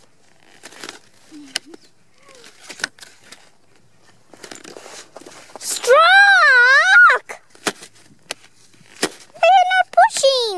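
Faint scraping and crunching strokes of short skis and ski boots shuffling on packed snow. About six seconds in comes a loud, drawn-out, high-pitched wordless voice that rises and falls, with a shorter high call near the end.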